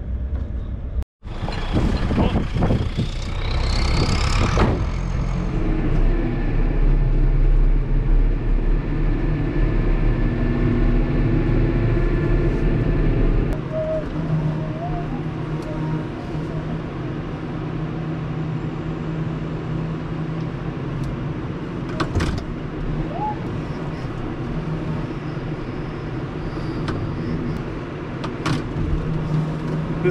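John Deere loader tractor's engine running steadily, heard from inside the cab, with a rising whine a couple of seconds in. The engine note drops and changes about halfway through, and there is a single knock later on.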